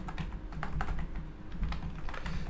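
Typing on a computer keyboard: a run of light, irregularly spaced key clicks as a search term is typed.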